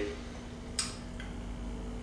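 A short sharp click a little under a second in and a fainter one shortly after, over a steady low hum.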